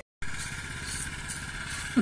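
The sound drops out for a moment at the start, then a steady engine hum holds with a faint high tone.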